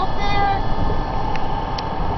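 Steady road and engine noise inside a moving vehicle's cabin at highway speed, with a brief high-pitched voice sound in the first half second.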